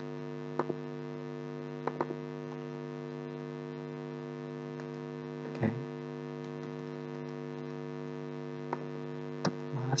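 Steady electrical hum made of several even tones in the recording, with a few short sharp clicks scattered through it: computer mouse clicks and keystrokes while code is edited.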